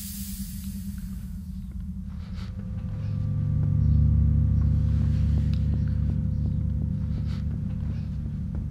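Low rumbling drone of a film score, swelling from about three seconds in and then easing off, with faint regular ticks over it.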